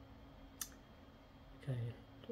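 A single short, sharp click about half a second in, against a faint steady hum.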